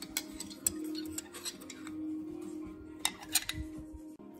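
Metal spoon stirring tea in a ceramic mug, clinking against the sides in quick, irregular taps, with two louder clinks a little after three seconds in.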